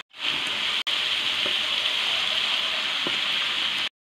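Onion paste and whole spices frying in hot ghee in a kadai, a steady bubbling sizzle with a brief break just under a second in.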